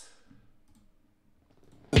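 Near silence with a few faint clicks, then rap music with a male rapper cuts back in abruptly just before the end.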